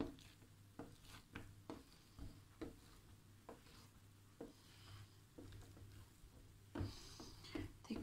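Faint scattered taps and soft rubbing of hands stretching thin dough across a metal tray, over a low steady hum.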